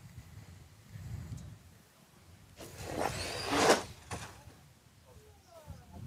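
RC drag cars launching down the strip: about two and a half seconds in, a brief rush of motor whine and tyre noise lasts about a second and a half. It grows loudest just before it cuts off.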